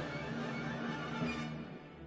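Symphony orchestra playing a passage from a 1969 concert recording, full and loud at first, then softening about one and a half seconds in.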